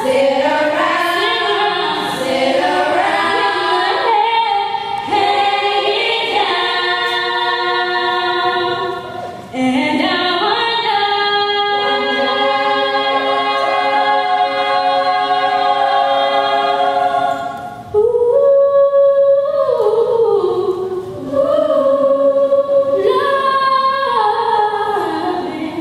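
All-female a cappella group singing held chords in several parts into handheld microphones, amplified through a PA. The sound drops briefly twice, about ten seconds in and again near eighteen seconds, before the voices come back in.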